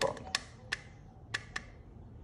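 A hot glue gun clicking four times as glue is dispensed: short, sharp clicks spread over about a second and a half.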